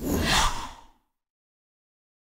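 A short whoosh sound effect accompanying an animated logo: a breathy rush that swells and dies away within about a second, followed by total silence.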